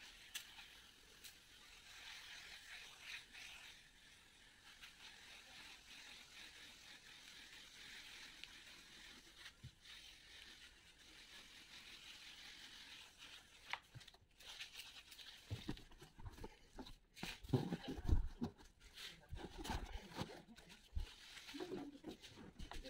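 Hand pressure sprayer misting upholstery cleaning agent onto fabric sofa cushions: a faint, steady hiss. In the last six seconds or so, irregular low knocks and rustling from handling the sprayer and cushions.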